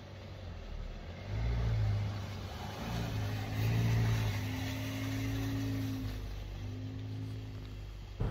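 Cupra Ateca 2.0 TSI four-cylinder petrol engine running as the SUV drives past slowly. It grows louder from about a second in, is loudest near the middle and fades as the car moves away.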